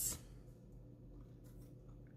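Near silence: faint steady room hum, with the tail of a spoken word at the very start.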